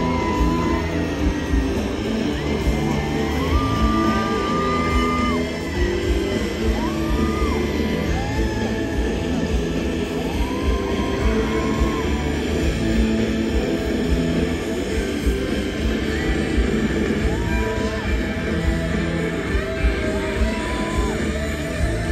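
Live rock band music played over a stadium PA, heard from far back in the audience: a steady drum beat under a melody line, with electric guitar.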